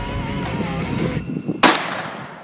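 Background music that cuts off a little past a second in, followed by a single loud shot from a Taurus .357 Magnum revolver, its report trailing off in a short echo.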